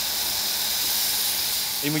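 Steam locomotive venting steam in a steady, even hiss.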